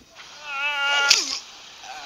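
A cat yowling, one drawn-out wavering cry of about a second that drops in pitch at its end, with a sharp crash about a second in.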